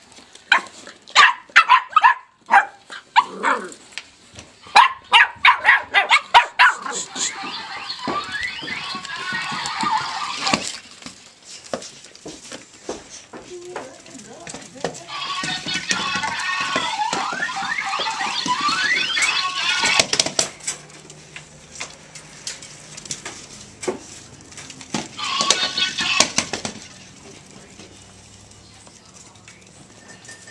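Irish Jack Russell Terrier puppies yapping and whining as they play: a quick run of short, sharp yaps over the first several seconds, then longer stretches of high, wavering squeals around ten seconds, from about fifteen to twenty seconds, and briefly again near twenty-six seconds.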